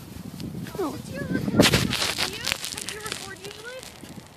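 Unclear voices calling out. About one and a half seconds in there is a loud rustling burst, followed by a quick run of crunching clicks.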